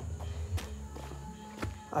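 A few quiet footsteps on a concrete and dirt yard, over faint steady background music.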